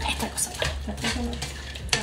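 A spatula stirring and scraping food in a frying pan, with repeated short clinks and knocks of kitchen utensils.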